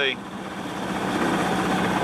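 Water rushing along the hull of a sailboat under way, a steady noise that swells over about two seconds.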